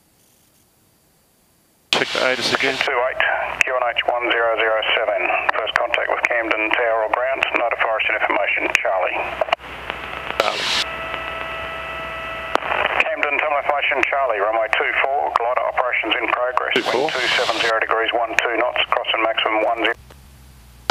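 Voice transmission over the aircraft's VHF radio, heard through the intercom audio feed: thin, band-limited speech that starts about two seconds in and runs nearly to the end. Midway it breaks for a steady pitched tone lasting about two seconds.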